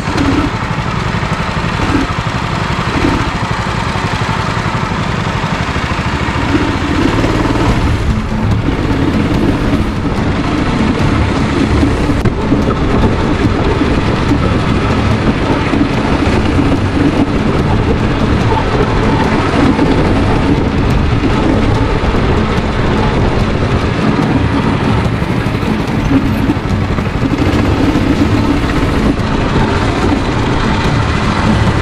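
Go-kart engine running continuously as the kart is driven around the track, heard from the driver's seat over a dense low rumble.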